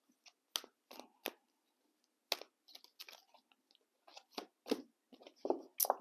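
Oracle cards being shuffled by hand: short, irregular clicks and snaps as the cards slide and tap against each other, with a sharper snap just before the end.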